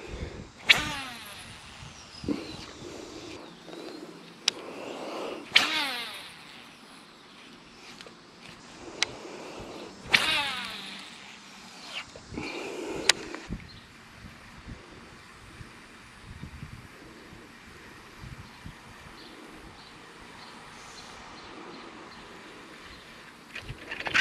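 Baitcasting reel casting and retrieving a chatterbait: a few short whirring runs of the spool that fall in pitch as it slows, with sharp clicks of the reel in between.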